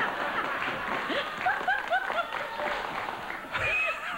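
Studio audience laughing, with some clapping mixed in.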